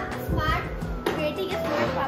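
Indistinct speech, a child's voice among it, with no clear words.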